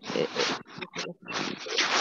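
Breathy vocal sounds from a person, in two stretches: one in the first half second and a longer one over the last two thirds of a second.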